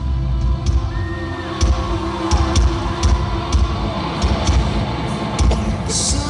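Rock band playing live, heard from the audience: an instrumental stretch with little or no singing, a drum beat with cymbal hits about twice a second over sustained bass and keyboard notes.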